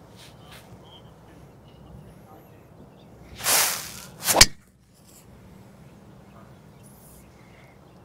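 A golf driver swung through with a swish, then the sharp crack of the clubhead striking the ball off the tee, a little over four seconds in.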